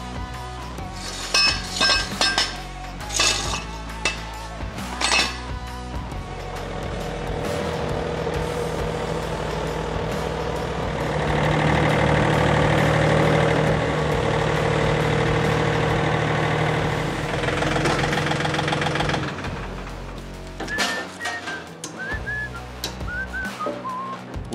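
Compact John Deere utility tractor's engine running steadily while its front loader carries an excavator bucket on a chain, loudest in the middle stretch. Sharp ringing clinks of steel come in the first few seconds, and lighter clinks of chain near the end.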